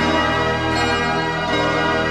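Electronic music played on a synthesizer keyboard: sustained, layered chords with many overtones and no singing.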